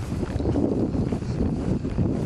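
Wind buffeting the microphone: a loud, gusty low rumble with no distinct event.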